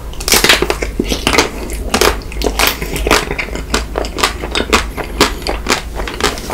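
Biting into a white chocolate Magnum ice cream bar. The chocolate shell cracks sharply just after the start, then gives a rapid run of crisp crackling crunches as it is chewed.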